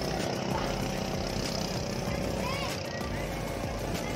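Steady drone of a motorboat engine, with several short rising-and-falling high squeals over it near the end.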